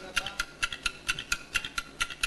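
Fast, even ticking sound effect, about seven crisp electronic ticks a second, faint next to the show's talk and music.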